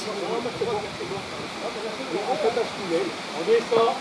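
Several people talking indistinctly in the background over a steady rushing noise.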